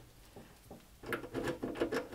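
Small handling sounds of a battery cable lug being fitted on a terminal stud and its nut turned down by hand: light metallic clicks and rustling, starting about a second in after a near-silent moment.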